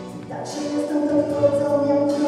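A young female singer singing into a microphone over a musical accompaniment, amplified through PA speakers; she starts a long held note about half a second in.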